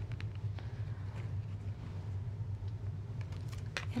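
A few faint clicks and taps of tarot cards being handled as the next card is drawn from the deck, the clearest just before the end, over a steady low background hum.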